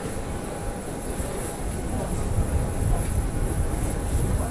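Steady low rumble of outdoor background noise, louder in the second half.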